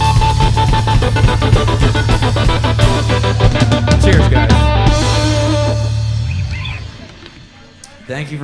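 Live country band playing the instrumental close of a song, electric guitar over bass and drums, coming to a stop about six and a half seconds in with the last notes ringing down.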